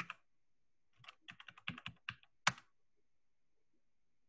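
Computer keyboard being typed on. A couple of clicks at the start are followed about a second later by a quick run of about a dozen keystrokes, ending with one louder stroke, as a web address is typed into a browser.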